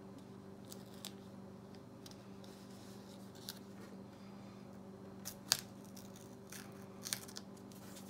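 Blue painter's tape being torn by hand and pressed down onto thick watercolor paper: faint scattered crackles and clicks, the sharpest about five and a half seconds in, over a steady low hum.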